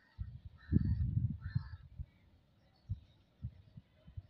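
Low, irregular rumbling and thumps on a phone's microphone outdoors, heaviest about a second in, with a few single thumps later.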